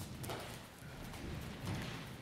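Footsteps of a group of people running across a hard floor, making irregular thuds and sharp taps.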